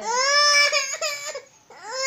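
Infant crying: one long, high-pitched wail of over a second, then a second wail that rises and falls, starting near the end.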